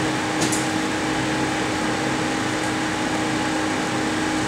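Steady drone of boiler-house plant running: an even mechanical hum holding two constant tones, with a small click about half a second in.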